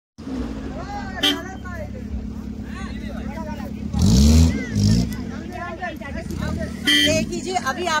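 A car's engine running with a steady low hum while driving, with people's voices in the background and a louder burst of sound about four seconds in.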